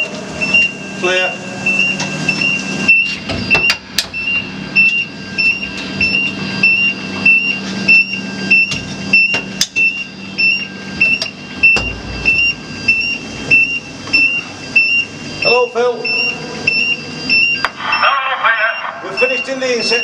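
Electronic warning beeper sounding a short, high beep about twice a second, steady and unbroken, with scattered metallic clicks and knocks of the shaft cage. A man's voice comes in briefly near the end.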